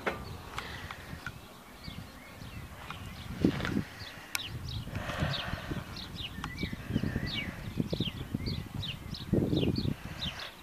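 Small birds chirping with many short, quickly falling notes, over an uneven low rumble.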